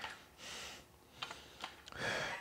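A soft breath out after an exercise set, then a few faint light clicks as the dumbbells are lowered.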